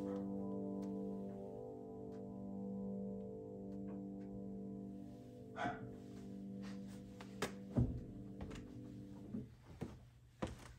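The final chord of a song held on a grand piano, slowly fading away and cut off near the end. Several knocks and clicks from the player moving at the instrument come in the second half, with the loudest thump about eight seconds in.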